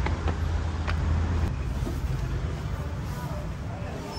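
Low rumble of road traffic, with a few light footsteps knocking on stairs in the first second and a half; the rumble eases after that.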